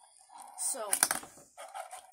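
Fingerboard clacking on a wooden table: a few sharp clicks about a second in as the little board is moved and tapped on the tabletop.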